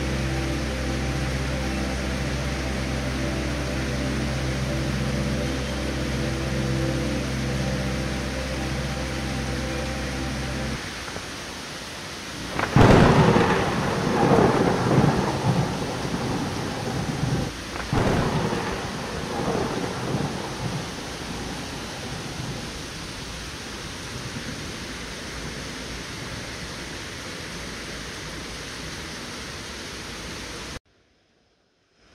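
Heavy tropical rain pouring steadily on foliage and ground, with a steady low mechanical hum under it for the first ten seconds or so. About 13 s in, a loud clap of thunder rumbles on for several seconds, and a second peal follows about five seconds later.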